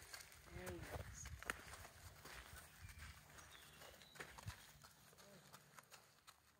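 Faint, irregular crunches and knocks of a horse's hooves stepping on gravel as she walks.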